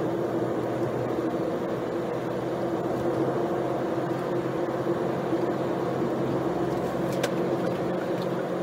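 Inside a moving car's cabin at cruising speed: a steady drone of engine and road noise, with one short click near the end.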